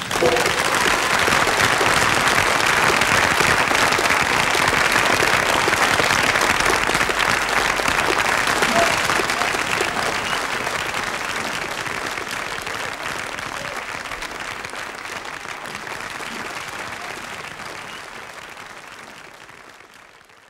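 Audience applauding as the music stops, the applause fading out gradually over the second half.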